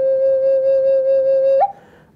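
Native American-style wooden flute holding one long, breathy low note; about a second and a half in the note flicks briefly upward and then stops abruptly for a breath.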